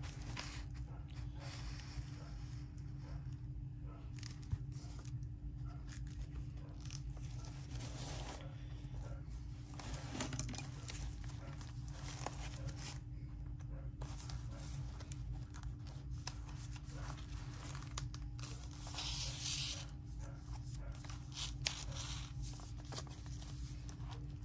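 Quiet rustling and handling of paper and card while a journal signature is hand-sewn, thread being drawn through the punched holes, with a louder rasp late on and a few small clicks, over a steady low hum.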